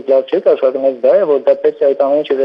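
A man speaking continuously in Armenian, heard through a telephone line with a thin, narrow sound.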